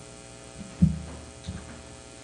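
Steady electrical mains hum on the church sound system, with a few low thumps. The loudest thump comes just under a second in and a smaller one about halfway through.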